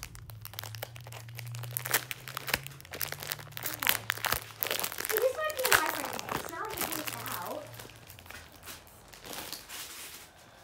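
Packaging being handled and opened close to the phone's microphone: dense, irregular crinkling and crackling, with a voice briefly heard in the middle.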